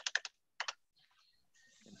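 Computer keyboard keystrokes: a quick run of clicks, then two more a moment later, as a figure is typed into a spreadsheet cell and entered.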